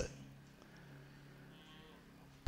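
A nearly silent pause in a man's speech, with only a faint steady low hum of room tone.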